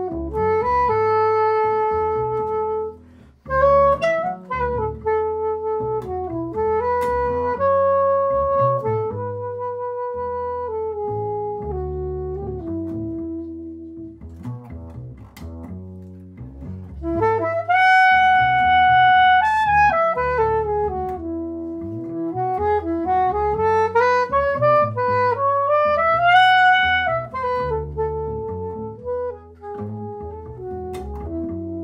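Soprano saxophone playing a melodic solo line of held notes over a plucked upright double bass. In the second half the saxophone climbs in a long stepwise run to a high note.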